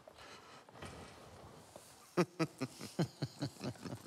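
A run of short vocal sounds from a person, about five a second, starting about halfway through, each one sliding down in pitch; before that only faint background.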